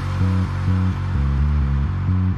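Minimal techno track: a pulsing synth bass line repeating about twice a second, with a longer, lower bass note held through the second half.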